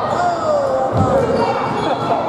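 Basketball shoes squeaking on a hardwood gym floor in several short sliding squeaks, with a basketball thudding on the floor about a second in.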